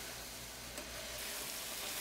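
Cremini mushrooms and pearl onions sizzling steadily in bacon fat in a braising pan as they brown, stirred now and then with a wooden spoon.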